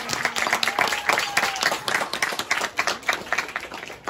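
Audience applause: many people clapping steadily, with faint voices underneath.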